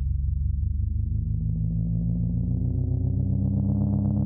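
Low synthesizer drone with a rapid pulsing throb in its bass notes. It grows steadily brighter as higher tones open up over it, the instrumental intro of an electronic track.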